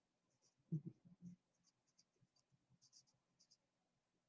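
Near silence with faint, short scratches of writing or drawing. A brief soft low sound comes a little under a second in.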